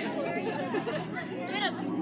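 Background chatter of several people talking at once, with no single clear voice standing out.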